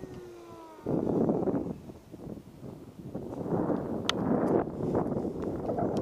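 An RC park jet's DYS 2600 kV brushless motor and three-blade prop whining, falling steadily in pitch as the motor, which has started surging, is throttled back. About a second in, this gives way abruptly to a loud, rough rushing noise with a few sharp clicks.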